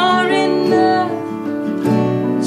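A woman singing a slow worship song in long held notes, accompanied by an acoustic guitar.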